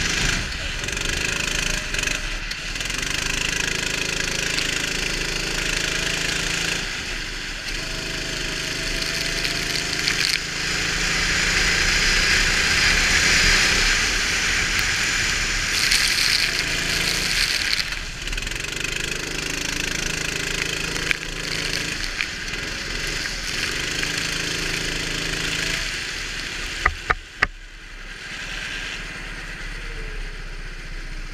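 Go-kart engine running under throttle, its pitch rising and falling through the corners, under a loud rushing hiss of wind and spray on the onboard microphone. Three sharp clicks near the end.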